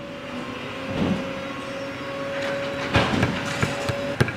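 Leather-cutting clicker press in a shoe factory: a steady machine hum with a thin whine, a sharp knock about a second in and a cluster of knocks near the end as the press cuts through leather.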